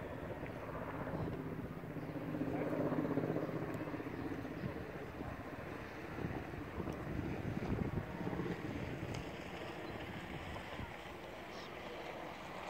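A low, steady engine drone under wind noise on the microphone, with faint voices in the background.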